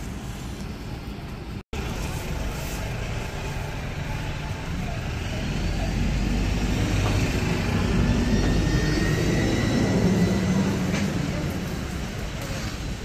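Road traffic noise with a low engine rumble that swells through the middle and then eases, with voices in the background.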